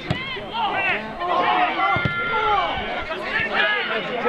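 Several voices shouting over one another on a football pitch, with a couple of sharp thuds, one right at the start and one about two seconds in.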